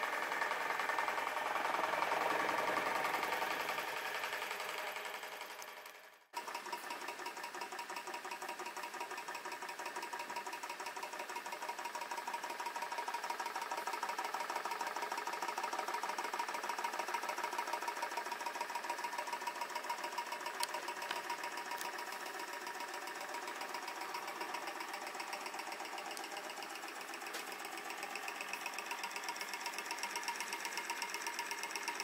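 Olds & Sons Huxtable hot air (Stirling) engine running at speed: a fast, even mechanical clatter from its piston, linkage and flywheel. It breaks off briefly about six seconds in, then goes on steadily.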